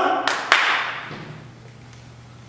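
Two sharp hand claps about a quarter of a second apart, the second louder, each echoing in a large hall.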